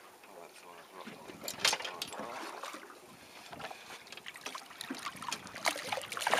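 Water lapping against the side of a small boat, with a few sharp knocks and clicks about a second and a half in and again near the end.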